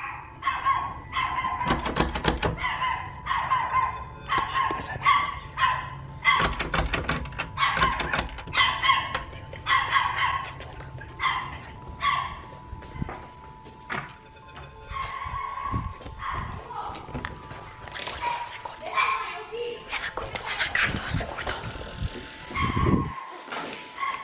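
A dog barking repeatedly in short bursts while a door is knocked on again and again; the barking is set off by the knocking.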